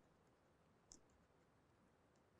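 Near silence: room tone, with one faint short tick about a second in.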